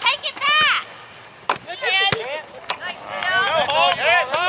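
Raised voices of sideline spectators shouting to youth soccer players, in several short calls. A few sharp knocks come in between, about one and a half, two and nearly three seconds in.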